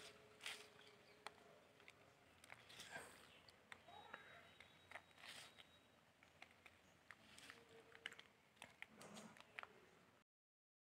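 Very faint, scattered crackling and rustling of dry coco peat (coir pith) as a hand stirs and lifts it.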